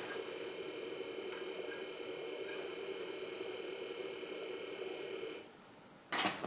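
Apple Disk II floppy drive running with a steady hum while the DOS 3.3 System Master disk boots. Its motor cuts off suddenly about five and a half seconds in, as loading finishes.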